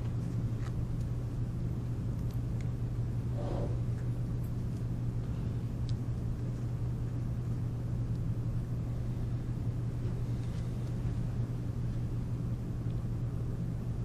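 Room tone: a steady low hum over faint background noise, with a few faint ticks and one faint brief sound about three and a half seconds in.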